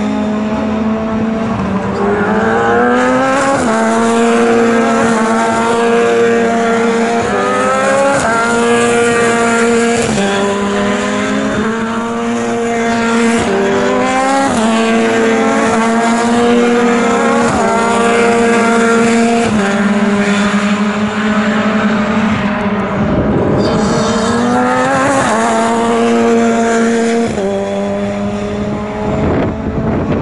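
Formula 3 single-seater race car engines running hard on track, their pitch repeatedly climbing and then dropping sharply as the drivers shift gears. A loud swell comes near the end as a car passes close by.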